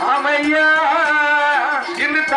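Men singing a Tamil villupattu (bow song) in long, ornamented held notes, with percussion including a clay pot played by hand.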